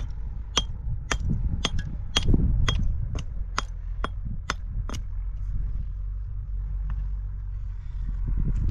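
A hammer striking a stone block with sharp, evenly spaced blows, about two a second, that stop about five seconds in. A steady low rumble lies underneath.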